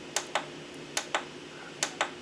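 Short plastic clicks from a digital scale's unit button being pressed and released, three times in quick pairs, as the readout is switched from kilograms to pounds. A faint steady hum lies underneath.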